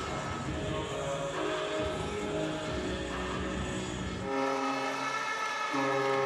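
Ice arena during a sled hockey game: crowd and rink noise, then about four seconds in a goal horn sounds as a steady, sustained chord, marking a goal.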